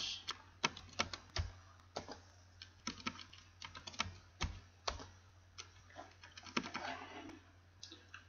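Computer keyboard typing and clicking, irregular keystrokes a few a second, over a faint steady low hum.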